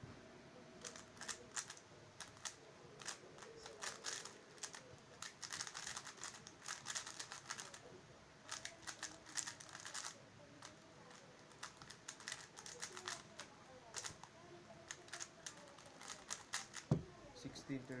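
MF3RS stickerless 3x3 speed cube being turned fast through a solve: rapid bursts of plastic clicking and clattering with short pauses between them. Near the end a single loud knock as the cube is put down on the table.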